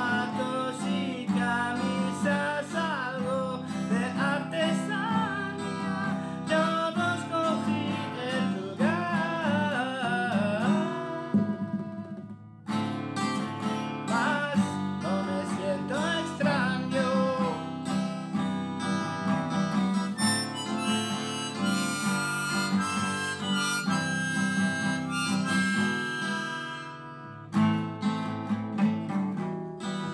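Harmonica in a neck holder played together with a strummed acoustic guitar by one player, an instrumental passage with short breaks about twelve and twenty-seven seconds in and long held harmonica notes in the second half.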